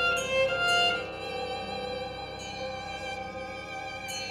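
Violin playing a few quick notes in the first second, then long held notes with vibrato.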